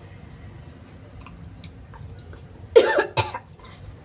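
A woman coughing during tongue scraping with a wire tongue cleaner: two harsh coughs close together about three seconds in, with faint small clicks around them.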